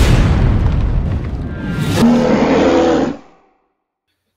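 Intro sting of produced sound effects: a loud, deep boom with a crashing rumble, then a second hit about two seconds in carrying a held musical chord, which fades out a little after three seconds.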